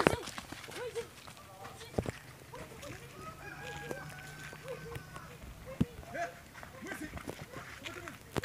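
Scattered short calls of distant voices outdoors, broken by three sharp knocks: at the start, about two seconds in and near six seconds.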